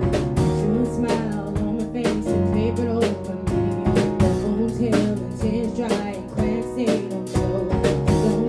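Live band music: a drum kit striking often under electric guitar, bass and keyboard, with a bending melodic line in the middle range that may be the lead vocal.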